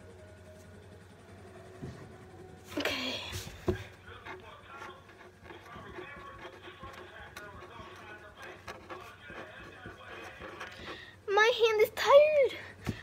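Faint background voices through most of the stretch, with a brief louder voice about three seconds in and a loud voice that rises and falls in pitch near the end.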